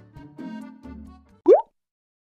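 Faint background music trailing off, then a single short, rising 'bloop' sound effect about one and a half seconds in, after which the sound cuts to silence.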